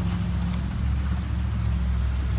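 A steady low mechanical drone.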